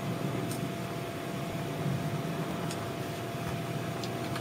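Steady low hum and hiss of room noise with a faint steady high tone running through it, broken by three faint isolated clicks.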